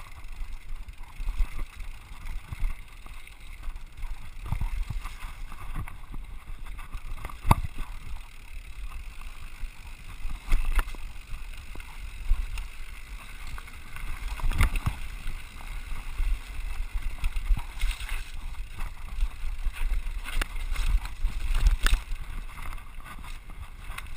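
Scott Scale RC 29 hardtail mountain bike descending a rough dirt singletrack at speed: a steady rumble of tyres on dirt with wind buffeting the microphone, broken by many sharp knocks and rattles from the rigid rear end as it hits roots and rocks, a few of them much louder than the rest.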